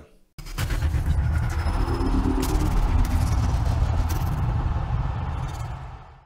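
Animated channel-intro sting: bass-heavy music with sharp sound-effect hits, starting about half a second in and fading out near the end.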